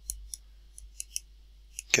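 A pen stylus ticking against a tablet writing surface during handwriting: about eight short, light, irregular clicks as the pen lifts and lands on each stroke.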